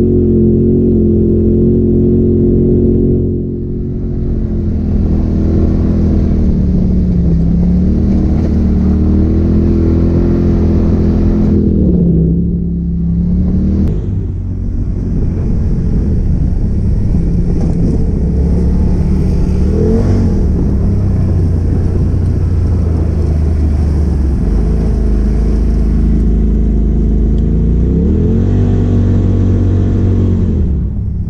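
Onboard sound of a Polaris RZR side-by-side's engine running under way on the trail, its pitch rising and falling with the throttle. The sound dips and changes about 12 to 14 seconds in, and the engine pitch climbs again near the end.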